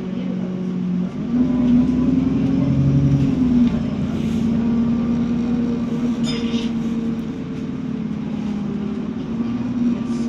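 A 2012 Alexander Dennis Enviro 400 double-decker bus under way, heard from inside the passenger cabin. The engine and drivetrain note climbs and grows louder about a second in as the bus accelerates, shifts a little under four seconds in, then holds steady as it cruises.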